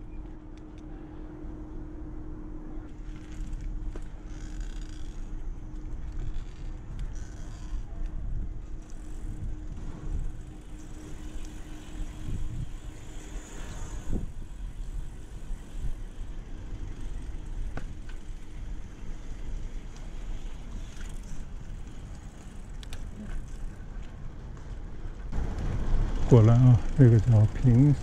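A bicycle being ridden, with steady low wind rumble on the microphone and tyre noise on the path. A faint steady hum runs through the first half and stops about halfway through.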